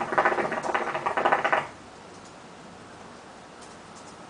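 Hookah water bubbling in the base as smoke is drawn through the hose: a rapid run of gurgles lasting about a second and a half, then stopping.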